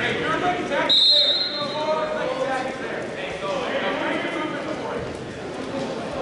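Coaches and spectators calling out across a large gym, with a short high-pitched whistle blast about a second in.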